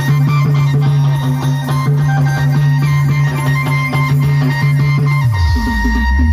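Adivasi band-party timli music, amplified through loudspeaker stacks: a fast drum beat over a held low bass note. About five seconds in, the bass moves into a changing line.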